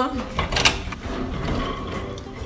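Clicks and rattles with low rumbling handling noise from a phone being carried by hand, with a sharp click a little past half a second in.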